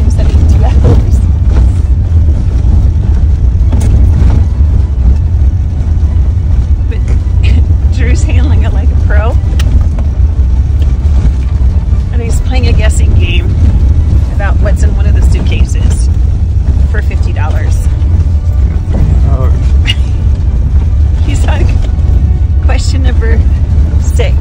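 Steady low road-and-engine rumble inside the cabin of a moving car, loud and unbroken throughout.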